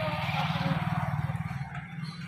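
Yamaha FZ motorcycle's single-cylinder engine running at idle with a rapid, even low putter, swelling a little midway and then easing.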